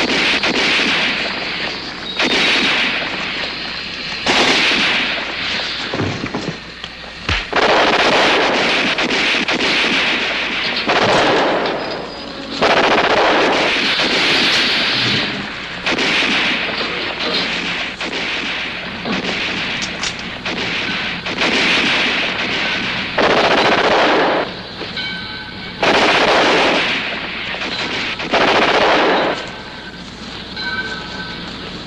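Repeated bursts of machine-gun fire, each lasting one to three seconds, with scattered shots between them; about a dozen bursts in all.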